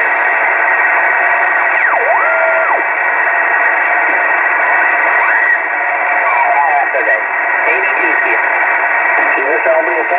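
Kenwood TS-450S HF transceiver's speaker giving out 20-metre band noise in USB as the tuning knob is turned, with whistles sweeping in pitch and garbled sideband voices sliding through. A whistle swoops and holds briefly about two seconds in, more wavering tones pass through past the middle, and a voice comes in near the end. The receiver is pulling in signals after its repair.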